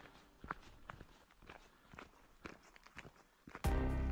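Faint footsteps on a gravel track, a string of irregular steps. Background music comes back loudly near the end.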